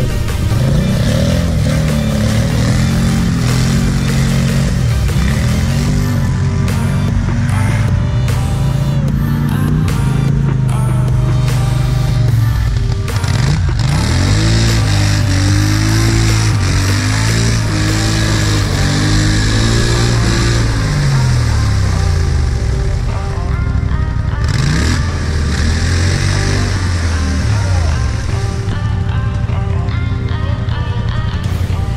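A quad (ATV) engine revving up and down again and again as the quad churns through a deep mud hole, mixed under background music that runs throughout.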